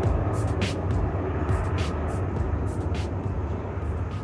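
Steady low outdoor rumble with scattered sharp clicks at uneven intervals.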